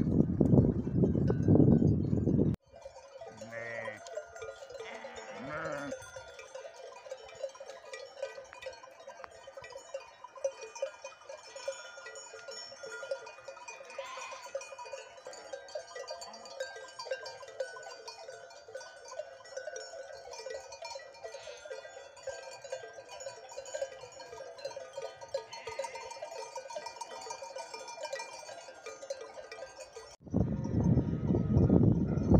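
Loud low rushing noise for the first couple of seconds, stopping abruptly. Then a grazing flock of sheep: sheep bells clinking and ringing steadily, with a few sheep bleats, the clearest between about three and six seconds in.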